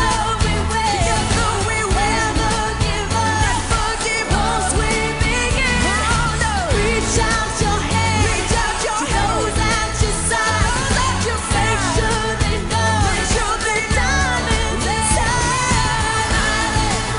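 Live pop band playing, with male and female lead vocals sung over drums and keyboards.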